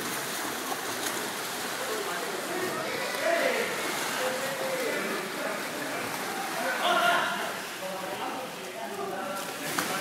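Indoor swimming-pool ambience: a steady wash of water noise with indistinct voices echoing around the hall, the voices loudest about seven seconds in.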